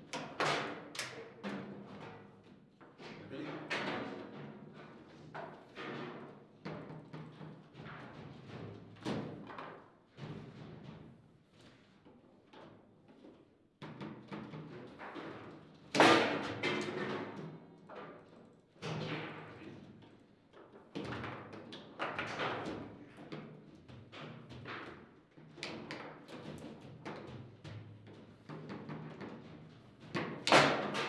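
Table football in play: the ball and plastic players knocking and clacking, with metal rods sliding and their bumpers thumping against the table walls in an irregular run of sharp knocks. The hardest strike comes about halfway through, a single loud crack of a shot.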